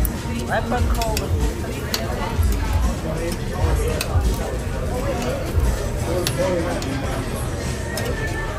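Busy restaurant background of overlapping voices and music, with a few sharp clicks of metal tongs against the tabletop barbecue grill plate.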